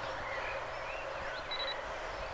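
Open-air background with faint bird chirps, and one short, high electronic beep about one and a half seconds in.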